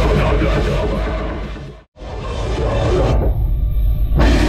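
Live heavy metal band playing: dense distorted guitars, drums and vocals. The sound fades and cuts out for an instant just under two seconds in, then comes back and turns muffled for about a second near the end.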